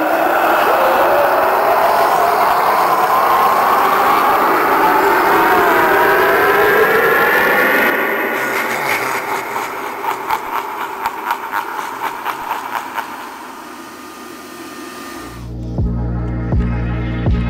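The Harvester of Souls animatronic's soul-sucking sound effect: a swirling, eerie tone that rises slowly in pitch for about eight seconds, then breaks into a run of rapid pulses that fade away. Near the end, music with a low, throbbing beat starts.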